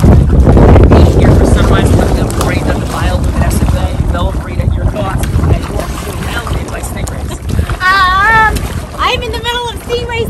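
Wind rumbling on the microphone over open sea water, loudest in the first two seconds, with water splashing and background voices, including a wavering high-pitched voice about eight seconds in.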